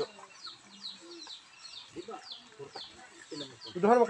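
Chickens clucking and peeping: a run of short, high, falling chirps, then a louder outburst near the end.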